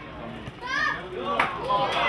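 Young footballers shouting to each other on the pitch, short high calls, with a couple of sharp knocks about one and a half seconds in.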